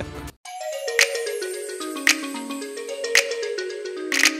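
Background music: a melody of short stepping notes with a sharp percussive hit about once a second.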